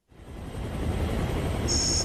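Steady rushing aircraft engine noise fading in over the first half second, with a brief faint high tone near the end.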